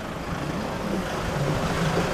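Steady low motor-vehicle hum with a wavering pitch, under a faint even hiss.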